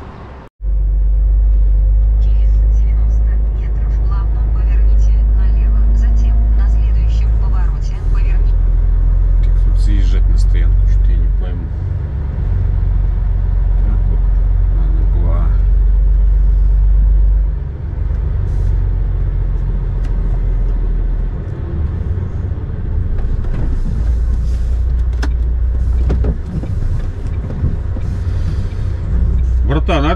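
Heavy truck's diesel engine and road rumble heard from inside the cab while driving, a loud, steady low drone that eases down in steps later on as the truck slows.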